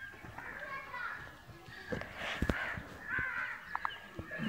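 Children's and adults' voices chattering in the background, with two sharp knocks close together about two and a half seconds in and a lighter pair near the end, from bricks being handled during bricklaying.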